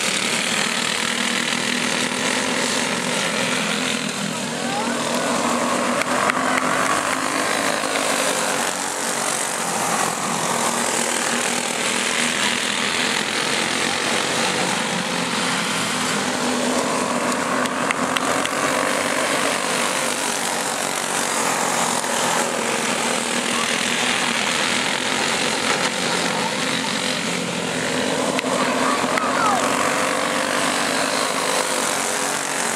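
Several racing go-kart engines buzzing together around the oval, their pitch rising and falling as the karts come off the throttle and accelerate through the turns, louder near the end as the pack nears.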